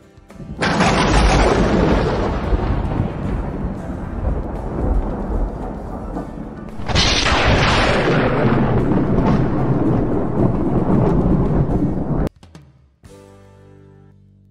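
Two long peals of thunder, each rumbling for about six seconds, the second starting about seven seconds in and cutting off suddenly near the end.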